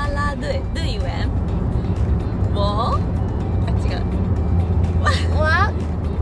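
Steady low rumble of a car's interior while it is running, under background music, with a few short phrases of a woman's voice.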